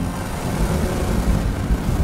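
Title-sequence sound design: a swelling rush of noise over a deep bass rumble, building into an intro sting.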